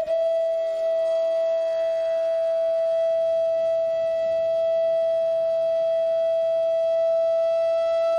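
Instrumental music: a flute-like wind instrument holds one long, steady note.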